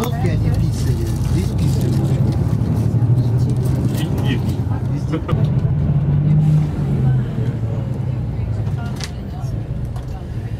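Tour coach engine running with a steady low drone, heard from inside the cabin while driving. The drone rises in pitch briefly about five and a half seconds in, then settles back down.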